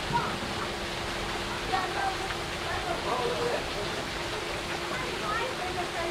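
Steady rushing and splashing of a backyard pool's rock waterfall, with children's voices calling out from the pool over it.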